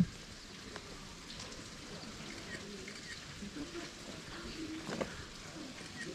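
A sharp knock right at the start, then quiet open-air ambience with faint distant voices and a small click about five seconds in.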